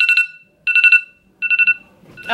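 iPhone timer alarm going off: three short bursts of rapid high-pitched beeps with brief pauses between them, signalling that the countdown timer has run out.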